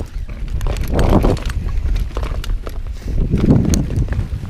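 Mountain bike riding over a rough trail: tyres rumbling on dirt and rock, with sharp clicks and rattles from the bike and a steady low rumble of wind on the microphone. The noise swells in surges at irregular intervals of about one to two seconds.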